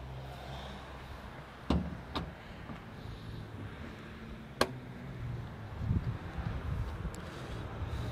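The front boot lid of a Porsche Boxster being shut: a thump just under two seconds in, then a sharp click a few seconds later. A low steady hum runs underneath.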